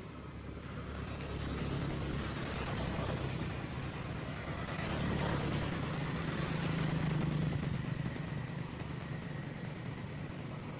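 Low engine hum of a passing motor vehicle over a steady outdoor hiss, swelling over several seconds and easing off near the end.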